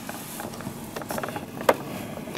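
A cardboard toy box with a plastic window being handled, giving light rustling and small clicks, with one sharper click near the end.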